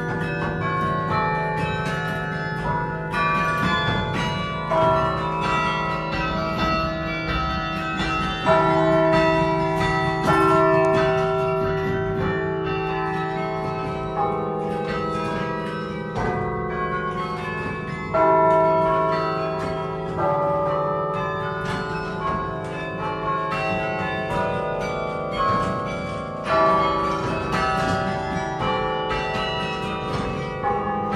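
Carillon being played: a tune of struck bronze bells, each note ringing on and overlapping the next, with a few louder strikes standing out.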